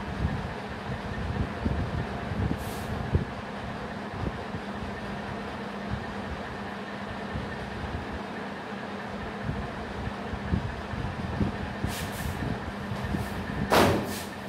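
Steady low hum and rumble of background noise, with faint scratchy strokes of a marker writing on a whiteboard, most noticeable about three seconds in and again near the end.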